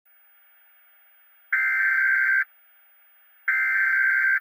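Emergency broadcast alert signal: two harsh electronic tone bursts, each about a second long and a second apart, the first about a second and a half in, over a faint steady tone.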